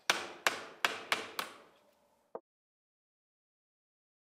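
Hammer striking a steel nail punch five times, about three blows a second, driving out the pin that holds the clutch onto a Powakaddy golf trolley's axle. A short, lighter clink follows about two seconds in.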